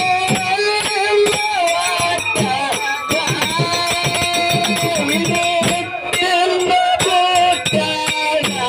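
Live Kannada dollina pada folk song: a man singing in long, wavering held notes over a steady beat of hand percussion and jingling rattles.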